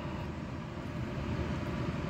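Steady, even background hum and hiss, with no distinct clinks or knocks.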